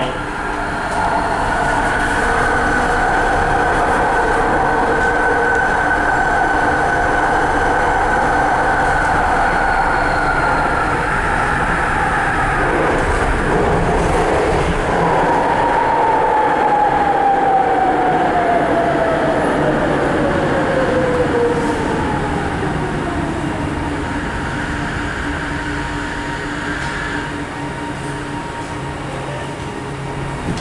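Inside a rapidKL ART Mark III (Bombardier Innovia Metro 300) linear-induction-motor train car as it runs, with a steady high whine. From about halfway, a whine falls steadily in pitch and the running noise fades as the train brakes into a station.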